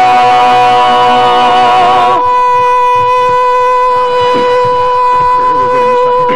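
Barbershop quartet of male voices holding a sustained chord a cappella, which cuts off about two seconds in. A single steady pitched tone then holds for the rest of the time.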